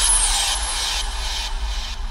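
Logo-intro sound effect: a deep rumble under a hissing, shimmering wash that slowly dies away.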